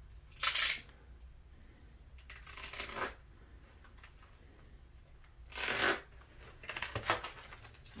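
Foam packing wrap rustling and crinkling as fingers pick at it to open it: three short bursts, then lighter crackling near the end.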